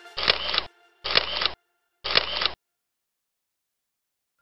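Camera shutter sound effect, three shots about a second apart, each a sharp click with about half a second of shutter noise after it.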